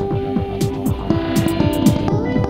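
Electronic music: a fast, repeating synth bass note that drops in pitch on every pulse, under a held synth tone. A hissing noise swell builds through the second half, with crisp hi-hat hits near the end.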